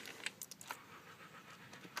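A few faint clicks of keys being pressed on a PS/2 computer keyboard, close together in the first second.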